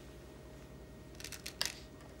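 Go stones clicking against a large demonstration board as a hand takes captured stones off it: a quick cluster of small clicks, loudest about one and a half seconds in.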